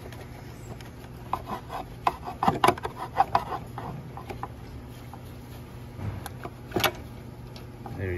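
Rattling clicks and scrapes of metal as the high-pressure fuel pump is wiggled and worked loose from its mount on a 2.4 Ecotec direct-injection engine, ending in one sharp click near the end.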